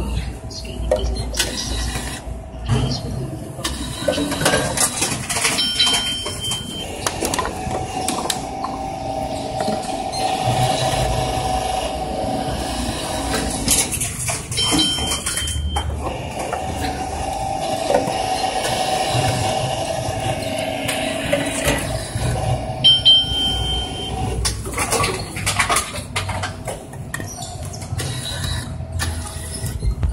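Reverse vending machine taking in plastic bottles: its motor hums in two runs of about five seconds each as it draws bottles in, with short high beeps as each cycle starts, among clicks and knocks of handling.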